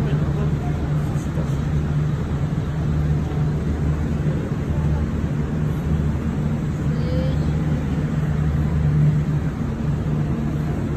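Steady low hum of a large warehouse store's background machinery and crowd, unchanging throughout, with faint voices now and then.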